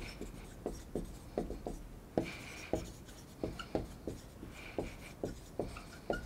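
Marker writing on a whiteboard: a quick, irregular run of short strokes and taps, with a couple of brief squeaks from the marker tip.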